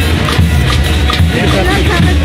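Loud live carnival street-band (murga) music with percussion beating about twice a second, mixed with the voices of a dense crowd.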